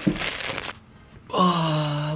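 A man's breathy whoosh, then after a short pause a held wordless vocal note, an 'ooh', sinking slightly in pitch.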